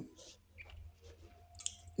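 Faint mouth noises and breath close to the microphone: a short hiss near the start, then a few soft clicks, with a sharper click near the end.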